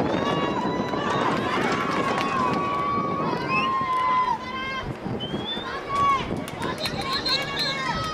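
Voices of soccer players and spectators shouting and calling out across an outdoor field over a constant murmur of crowd chatter, with several long drawn-out calls in the first half. A few sharp knocks come near the end.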